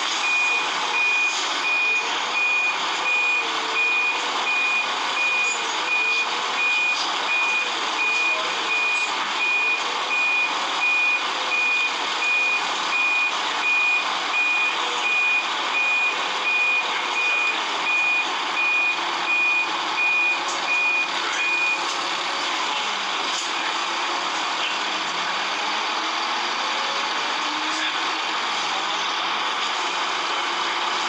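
Volvo Wright bus's reversing alarm beeping steadily about once a second as the bus reverses, stopping a little over twenty seconds in, with the bus engine running underneath.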